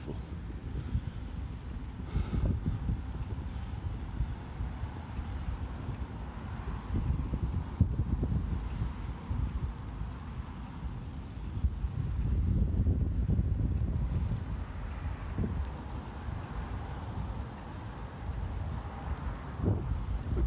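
Wind buffeting the microphone of a camera carried on a moving bicycle: a low, uneven rumble that swells and eases, louder for a couple of seconds past the middle.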